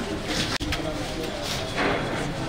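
Indistinct background voices over steady outdoor noise, with a sudden brief dropout about half a second in.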